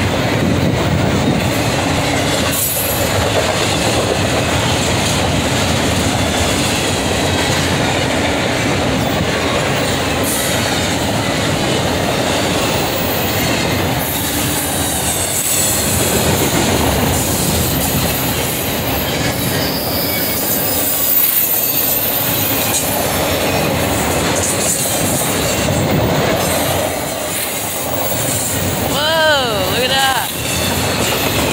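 Double-stack intermodal freight cars rolling past close by: a steady rumble of steel wheels on rail with clickety-clack, and thin high wheel squeal at times.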